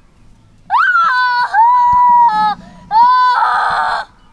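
A young boy crying out in three long, high-pitched wails, the last one breaking into a harsh, raspy scream near the end.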